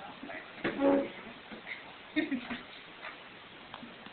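Brief, untranscribed voice sounds: two short pitched utterances about a second and a half apart, with a few fainter ones between them.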